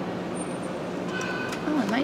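Steady background hum of a shop interior, with a person's voice coming in near the end.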